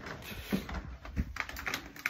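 A few light, irregular clicks and taps, starting about half a second in.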